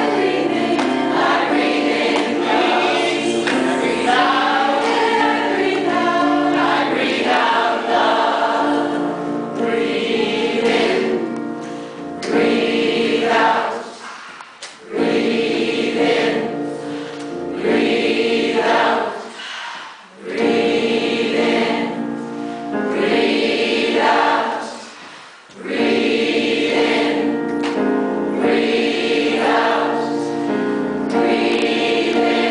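Mixed choir of men and women singing a cappella in harmony, long held chords in phrases, with three brief dips between phrases in the second half.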